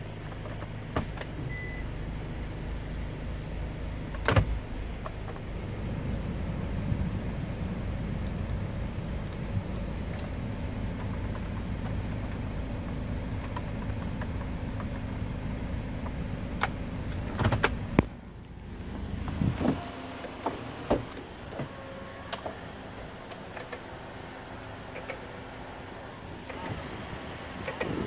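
Steady hum of a Hyundai Starex van's climate-control blower fan, which gets louder a few seconds in and stops abruptly about two-thirds of the way through. Sharp clicks of dashboard buttons are pressed now and then, with a quick run of lighter clicks after the fan stops.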